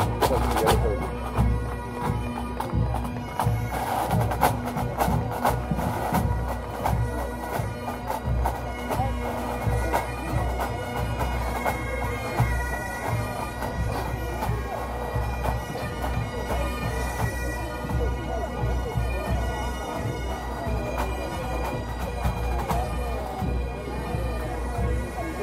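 Massed pipe bands playing: bagpipes with their steady drones under the chanter melody, with a dense run of drum strokes.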